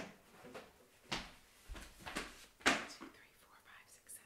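Only speech: a woman quietly counting aloud, a number at a time.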